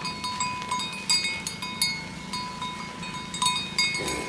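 Bells on cattle clanking irregularly as the animals move, with brighter strikes about a second in and again near the end.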